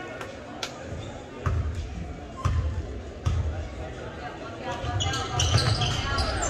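A basketball bounced on a hardwood gym floor by a player at the free-throw line before the shot, a thump about once a second.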